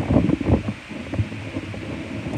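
Handling noise from the phone that is recording: irregular rubbing, muffled bumps and knocks on its microphone as it is moved and adjusted.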